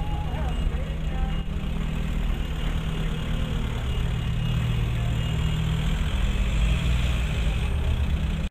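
City street traffic: car engines running and idling close by as a steady low rumble.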